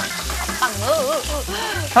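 Minced ginger and garlic sizzling as they are stir-fried in rendered salmon oil in a wok, over background music with a steady beat.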